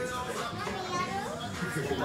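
Several people's voices talking and calling out over one another in a room.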